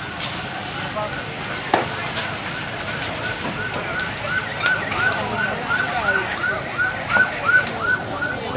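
A pulsing electronic siren of short rising-and-falling wails, about three or four a second, starts a couple of seconds in. It sounds over the crackle of a burning wooden house.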